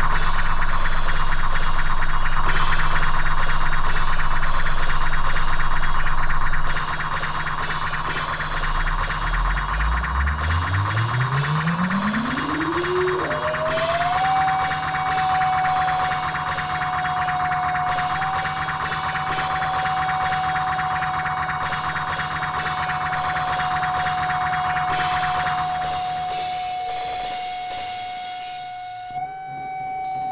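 Electronic noise music from an Elektron Digitakt and a Korg MS-20 mini synthesizer. A dense, pulsing hiss plays over a low drone; about ten seconds in, a tone glides steadily upward and then holds one high pitch while the hiss fades out near the end.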